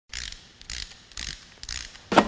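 Intro logo sound effect: four short, high, hissy mechanical bursts, evenly spaced about half a second apart.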